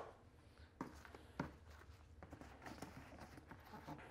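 Near silence with faint handling noises: two light knocks about a second in, then soft clicks and rustling as a padded tripod bag is handled and opened on a tabletop.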